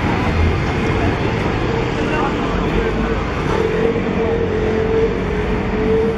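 City street traffic: a steady wash of car and engine noise, with a steady mid-pitched hum in the second half, and indistinct voices of passers-by.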